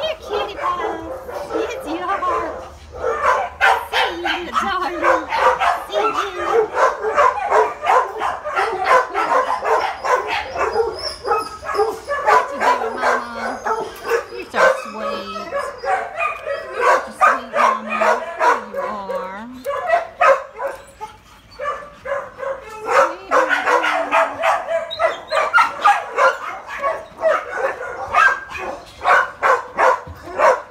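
Many dogs barking and yipping over one another, a nearly unbroken chorus of kennel barking.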